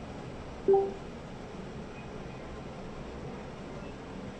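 A single short electronic beep a little under a second in, a smart-home device acknowledging a spoken command, over a steady background hiss.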